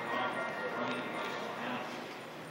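Indistinct voices of other people, with music playing behind them at a steady level.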